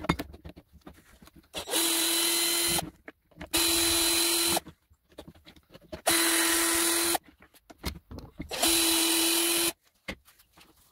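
Cordless drill running in four short bursts of about a second each at a steady pitch, driving screws out of an electric motor's housing, with small clicks and rattles of handling between the bursts.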